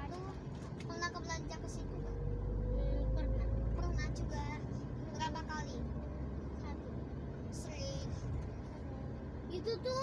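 A car's engine and road noise heard from inside the cabin while driving, a steady low rumble. About two to four seconds in the rumble swells and a faint drone rises slowly in pitch as the car picks up speed.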